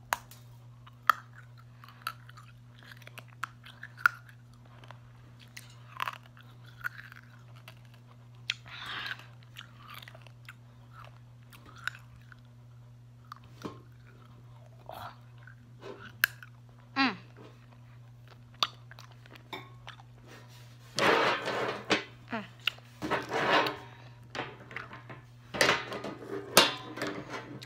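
Hard mint candy cane being sucked and bitten close to the microphone: sharp cracks and clicks between the teeth with wet mouth noises, and a louder noisy stretch about three seconds long near the end. A steady low hum runs underneath.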